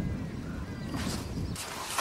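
Quiet outdoor background: a low rumble of wind on the microphone, with a few faint bird chirps in the first second and a rustling near the end.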